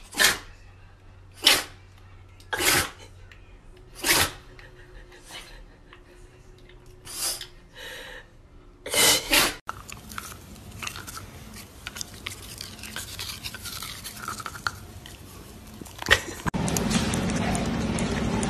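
A bulldog-type dog sneezing repeatedly, about eight short sharp sneezes spread over nine seconds. Then a dachshund chewing on a plastic toothbrush, a quieter steady scraping. A louder, steady sound starts near the end.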